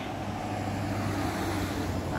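Road traffic: a vehicle driving past on the road, a steady low rumble of engine and tyres.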